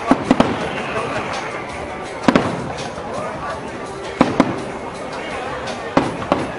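Aerial firework shells bursting: sharp bangs, three in quick succession at the start, then pairs about every two seconds and one more near the end, over a steady background din.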